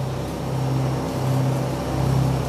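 Steady low drone of a boat's engine running, an even hum with a faint hiss over it.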